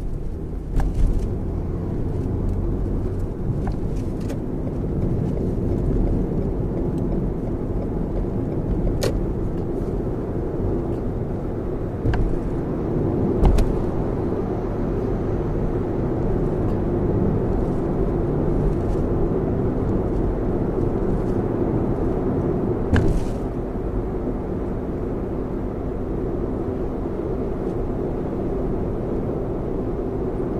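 Steady road and tyre rumble inside the cabin of a Lexus RX 450h hybrid driving on an expressway, with a few scattered clicks and knocks, the loudest about thirteen seconds in.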